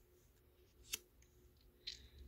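Laminated tarot card being handled and laid down: a single soft click about a second in, with a faint brief rustle of card near the end, otherwise near silence.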